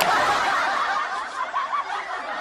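Breathy snickering laughter, thin and without low tones, fading gradually.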